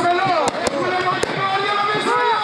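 Firecrackers going off: three sharp bangs within about a second, over a crowd of men shouting.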